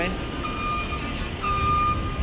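Busy city-square ambience: a steady low rumble of traffic with distant voices. Over it, music plays in held notes that change pitch about halfway through.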